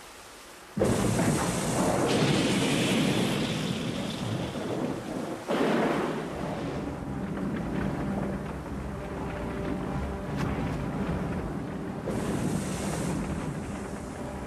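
Film sound mix of a thunderstorm: heavy rain with a sudden loud thunder crash about a second in and further rumbling surges about halfway and near the end, over sustained low tones of a dramatic score.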